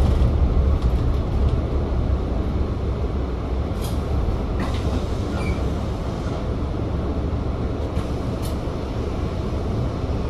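Volvo B5TL double-decker bus's four-cylinder diesel and cabin rumble, heard from the upper deck: low and steady as the bus creeps forward, then idling once it stops. A few faint clicks and rattles sit on top.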